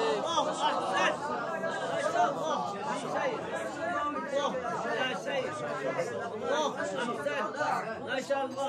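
Several men's voices talking and calling out over one another in a room. The murmur is steady and overlapping, and a held recited note ends just at the start.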